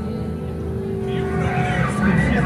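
Live rock band playing: held, steady electric guitar notes over a sustained bass and drum bed, with a singing voice sliding in near the end.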